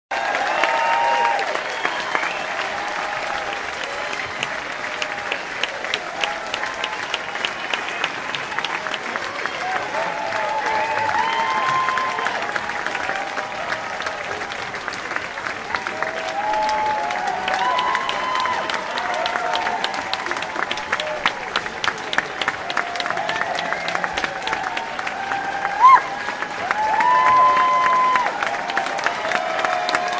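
Concert audience applauding, with many voices calling out over the clapping and a brief loud spike near the end.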